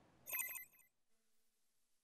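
A single short, bright, bell-like electronic chime lasting about half a second, followed by near silence.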